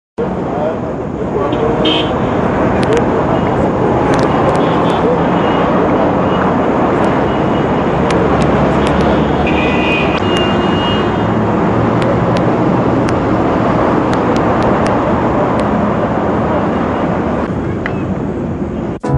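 Busy street ambience: steady traffic noise mixed with crowd chatter, with brief car-horn toots about two seconds in and again around ten seconds in.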